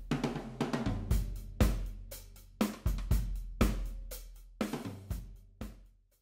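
Recorded drum-kit music: kick, snare, hi-hat and cymbals, with a strong hit about once a second. It cuts off suddenly just before the end.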